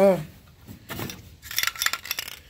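Metal aerosol spray-paint cans clinking and knocking against each other as one is pulled out of a cardboard box, a quick cluster of clinks in the last half second.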